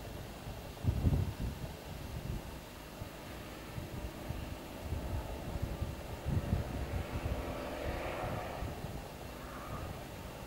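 Wind buffeting the camera microphone in low rumbling gusts, strongest about a second in and again around six and a half seconds, over a steady faint outdoor rumble.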